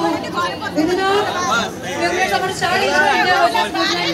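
A crowd talking close around the microphone: many voices overlap in a steady babble of chatter.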